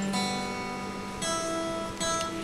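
Steel-string acoustic guitar played live: two chords strummed about a second apart, each left to ring out.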